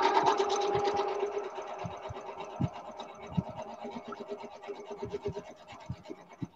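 Electric sewing machine stitching in a fast, even run of needle strokes, loudest at first and quieter from about a second and a half in, with a few soft thumps along the way.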